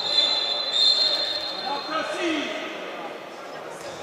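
Referee's whistle blown in one long, steady high blast that stops about two seconds in, signalling the stoppage for a foul, over the murmur of a crowd in an indoor sports hall.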